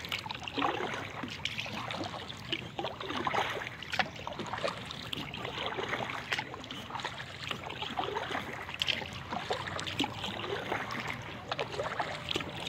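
Water splashing and dripping from a kayak paddle as it dips on a calm river, a continuous irregular patter of small splashes and trickles around an inflatable kayak.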